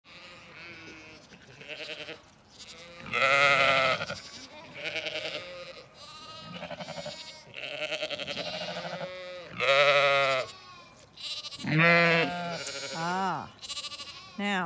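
A flock of Zwartbles sheep, ewes and lambs, bleating: many separate wavering calls one after another, some overlapping, the loudest about three, ten and twelve seconds in.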